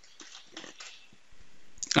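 A few faint computer keyboard keystrokes as a short word is typed, then a soft hiss shortly before the end.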